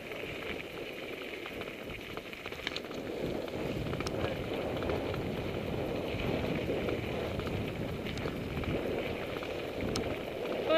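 Mountain bike rolling over a gravel dirt road: a steady crackling rush of tyre noise on loose stones, with a few sharp clicks from the bike.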